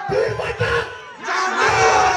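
A man shouting into a stage microphone over the PA, with a crowd yelling and cheering back, the crowd noise swelling loudest in the second half.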